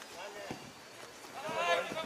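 Men shouting on a football pitch, with a loud drawn-out call starting about one and a half seconds in.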